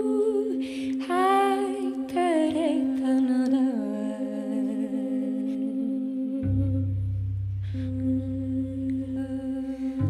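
Wordless vocal humming with vibrato over a steady held drone, voice and cello in a jazz ballad. About six and a half seconds in, a low sustained note enters beneath it and holds for about three seconds.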